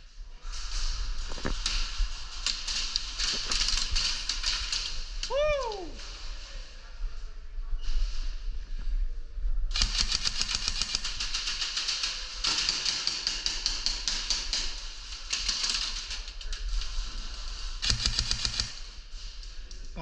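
Airsoft guns firing long bursts of rapid full-auto shots, a fast stream of sharp clicks, in two long stretches with a short break around the middle.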